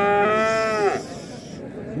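A calf moos once in a long, steady call that breaks off about a second in.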